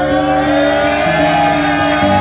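Background music: sustained low notes that change about halfway through, under a long held higher note.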